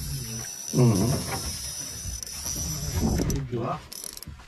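Low-profile jigging reel being cranked in short strokes, its gears giving a pitched whir that rises and falls with each turn of the handle, strongest about a second in and again around three seconds in.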